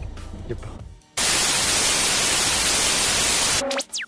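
Loud burst of television static lasting about two and a half seconds, starting about a second in and cutting off suddenly, then a quick falling electronic whine: an old-TV switch-off sound effect. Before the static, background music and voices trail off.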